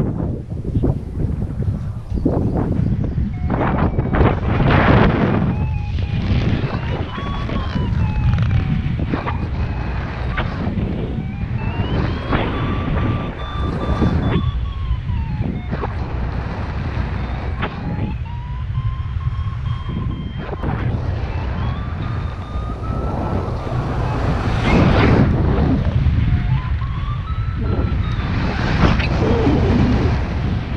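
Strong wind buffeting the microphone while paragliding, with a paragliding variometer's audio tone gliding up and down in pitch over several seconds at a time. The rising pitch signals that the glider is climbing in lift.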